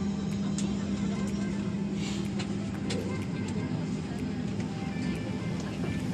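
Steady hum inside the cabin of a Boeing 737-900ER airliner just after landing, with a strong low drone and scattered small clicks. Music plays quietly over the cabin speakers and passengers murmur.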